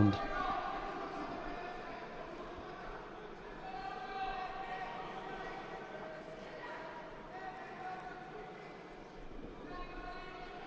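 Crowd murmur in an indoor arena, with indistinct voices calling out faintly at a distance.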